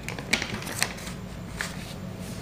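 A few short, soft clicks and rustles, three of them spread through the pause, over a steady low background hum.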